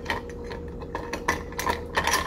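Long metal spoon stirring ice cubes in a glass mason jar of iced coffee: the ice clinks and rattles against the glass and spoon in quick, irregular clicks.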